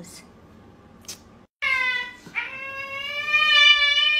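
Cat meowing loudly: a falling meow about one and a half seconds in, then a long drawn-out yowl held on one pitch. Before it there is only faint room noise with a couple of light clicks.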